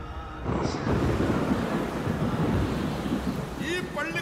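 Film trailer sound effect of a thunderstorm: a loud, deep rumble of thunder with a rain-like hiss that swells in about half a second in. A man's narration begins over it near the end.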